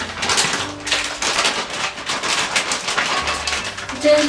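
Plastic bag crinkling and rustling densely and continuously as napa cabbage coated in kimchi paste is kneaded inside it.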